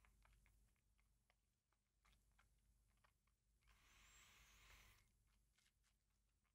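Near silence, with faint small wet mouth clicks as whisky is held and worked in the mouth during tasting, and a soft breath out about four seconds in.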